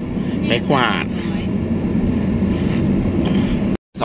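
Steady road and engine noise inside a moving car's cabin, with a low hum, cutting off abruptly near the end.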